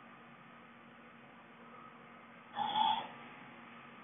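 Quiet room tone with a faint steady hum, broken about two and a half seconds in by one brief, half-second noise.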